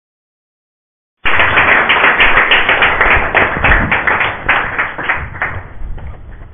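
Audience applauding. It cuts in abruptly about a second in and thins out toward the end.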